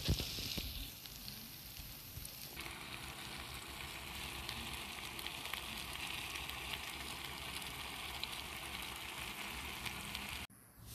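Meat and vegetables sizzling in a frying pan: a steady frying hiss that grows fuller about two and a half seconds in, with a brief knock of handling at the very start.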